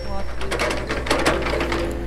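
Hitachi EX60 hydraulic excavator digging a trench: the diesel engine runs as a steady low hum under a dense, rapid clatter of clicks and knocks from about half a second in to near the end.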